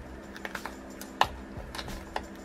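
Fingers handling a stiff chipboard sticker sheet, making a handful of short, sharp clicks and taps, the loudest a little past the middle.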